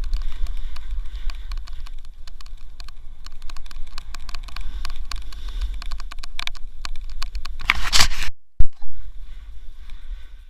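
Snowboard base and edges sliding and scraping over packed snow, with a steady low rumble of wind buffeting the microphone. Near the end a louder, harsher scrape as the board carves, followed by a sharp knock.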